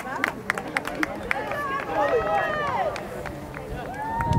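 Several voices shouting and calling out across an outdoor soccer field, overlapping, with a few sharp clicks in between. It gets somewhat quieter near the end.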